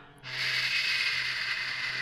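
A long, steady hushing 'shhh' hiss from a voice, starting a moment in and carrying on past the end, over faint background music.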